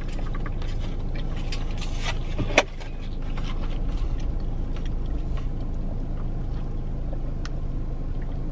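Steady low rumble of a parked car's cabin with the car running, with one sharp click about two and a half seconds in. Faint sips and small ticks from drinking through a straw in a plastic-lidded cup.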